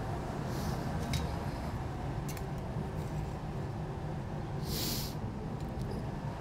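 Steady low kitchen background hum with a few faint clicks of utensils, and a short scrape about five seconds in as a metal spatula lifts a salmon fillet from a copper pan.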